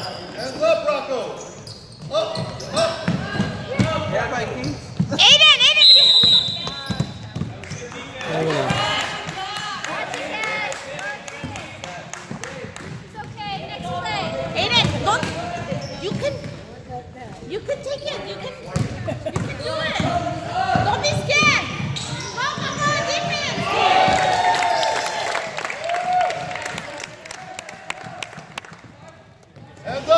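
Basketballs bouncing on a gym's hardwood floor during play, amid the voices of players and spectators echoing in the large hall.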